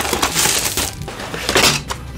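Clear plastic shrink-wrap being torn and pulled off a cardboard model-kit box: a loud crackling tear through most of the first second, then a second, shorter spell of crackling near the end.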